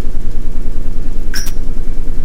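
A loud, steady low hum with a fast, even flutter, with one short click about a second and a half in.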